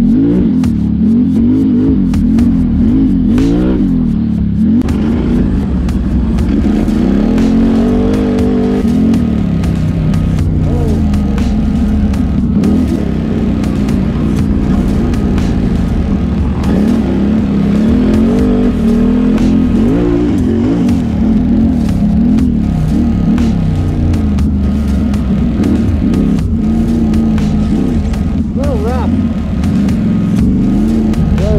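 Can-Am Renegade XMR 1000R ATV's V-twin engine running while riding a rough trail, its pitch rising and falling constantly as the throttle is worked on and off.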